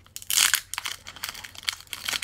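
Foil wrapper of a Pokémon Trading Card Game booster pack crinkling as it is torn open by hand, in quick irregular crackles with a louder burst about half a second in.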